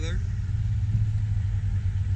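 A steady, fluttering low rumble with no clear pitch.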